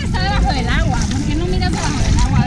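High, wavering voices over a steady low rumble.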